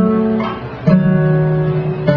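Guitar playing single plucked notes: one ringing on, then a lower note picked about a second in and held.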